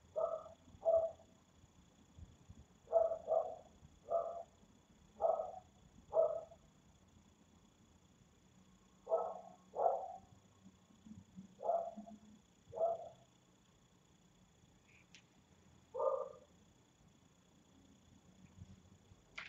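An animal calling in short, sharp calls, singly and in quick pairs, about a dozen with irregular pauses between them.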